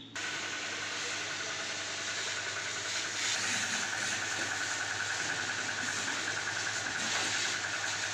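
Pressure washer running steadily, its jet of water spraying onto a scooter, with a fast, regular pulsing from about three seconds in.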